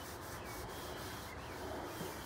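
Old cloth rag rubbing and wiping over greasy metal close to the microphone, a steady rubbing noise.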